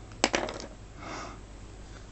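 A plastic set square clicks sharply as it is set down on the paper about a quarter-second in, with a brief rattle after it. A short, soft rustle follows about a second in.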